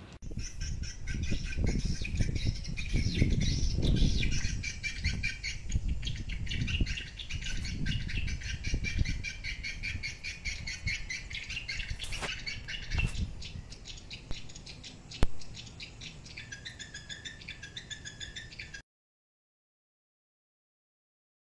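Edible-nest swiftlets calling: a dense, rapid high chirping that runs on without a break, over a low rumble that fades out about three-quarters of the way through. A sharp click comes about fifteen seconds in, and the sound cuts off just before the end.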